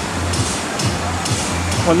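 Busy water-park background: a steady wash of noise with music playing and distant voices.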